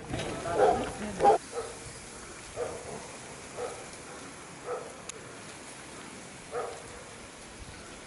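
Repeated short animal calls, six or so spaced about a second apart, the first two loudest and the rest fainter.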